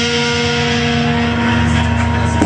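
Amplified guitar band's final chord held and ringing out at the close of a song, one steady sustained chord with no new strums.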